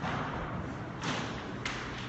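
Soft thuds, one at the start and another about a second in, then a short sharp click, over steady room noise.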